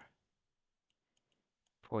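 A pause in speech, nearly quiet, with about four faint, sharp clicks spread across it from handwriting numbers into a computer whiteboard app. Speech resumes near the end.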